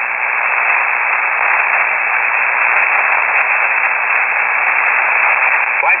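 Steady hiss of shortwave band noise from a KiwiSDR receiver in upper-sideband mode on 3476 kHz, with no signal on the channel. The hiss sounds narrow and thin, squeezed into the receiver's voice-width audio filter.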